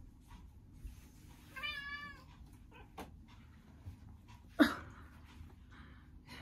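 A pet cat meowing once, a short wavering call about a second and a half in. A few seconds later comes a single sharp thump, the loudest sound, among faint rustling and clicks.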